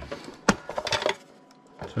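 Plastic battery compartment cover on the underside of a Panasonic RX-D550 boombox being unclipped and slid off: a sharp click about half a second in, followed by a few lighter clicks and rattles of the plastic.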